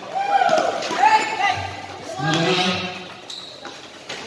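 A basketball being dribbled on a concrete court, with a couple of low ball bounces under high-pitched shouts from players and onlookers.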